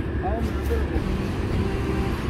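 Steady low rumble of outdoor background traffic noise, with a brief faint voice about half a second in.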